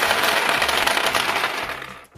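A heap of small plastic counting bears poured onto a hard tabletop, clattering and scattering in a dense rattle that tapers off near the end.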